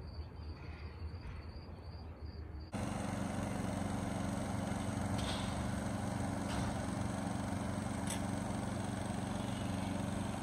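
Quiet outdoor ambience, then, about three seconds in, an abrupt cut to a small portable generator's engine running steadily, with a few faint clanks over it.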